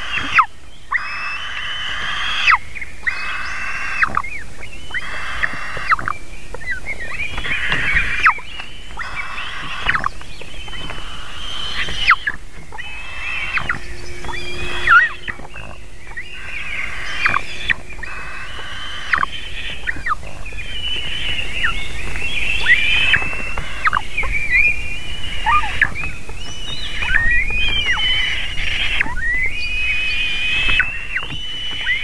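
Eagle nestlings giving high-pitched begging calls while being fed, a call every second or two, some notes sliding in pitch.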